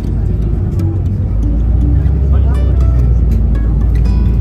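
A city bus moving past close by, its engine's low rumble growing louder from about a second in.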